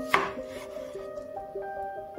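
A chef's knife cutting through a raw potato onto a wooden chopping board: one sharp cut just after the start. Background music with a plucked melody plays throughout.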